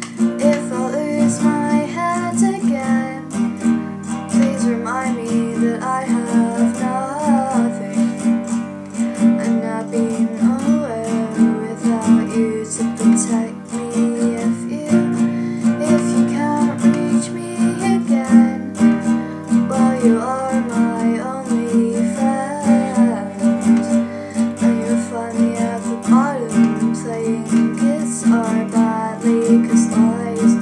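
Nylon-string classical guitar, capoed, strummed in a steady repeating rhythm, with a woman's voice singing over it in several stretches.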